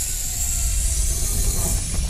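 Edited sound effect of a turning mechanism for an animated title graphic: a dense, steady mechanical noise over a deep rumble and a bright hiss.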